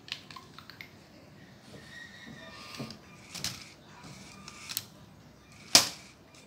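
A motorized Lego machine running through its cycle: plastic parts clicking and knocking, with a faint brief motor whine about two seconds in and a sharp, loud click shortly before the end.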